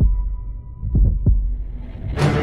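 Heartbeat-style sound effect in a dark trailer soundtrack: deep double thumps, one right at the start and a pair about a second in, over a faint sustained high tone that fades away.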